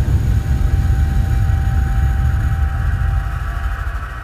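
Deep, steady cinematic rumble with a faint held high tone, a sound-design effect under a distributor's logo sting, slowly fading.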